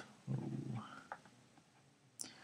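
A brief, quiet low vocal sound with a short rising tone at its end, followed by a faint click.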